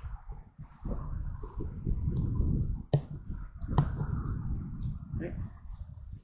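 Uneven low rumble of handling noise on a handheld camera's microphone as it pans, with two sharp clicks about three and four seconds in.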